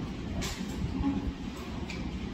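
Steady low rumble of room background noise, with a faint click about half a second in and another near the end.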